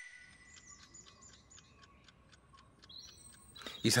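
Faint birds chirping: a quick run of short, high chirps, with a voice starting right at the end.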